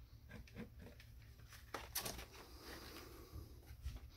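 Faint handling noise: a few soft rustles and clicks, the loudest a little before two seconds in, over a low steady hum.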